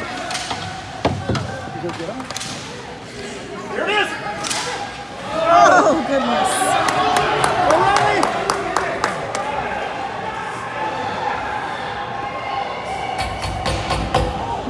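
Ice hockey play in a rink: a thud against the boards about a second in, then a run of quick stick clacks on the ice and more knocks near the end, with shouts from players and spectators around the middle.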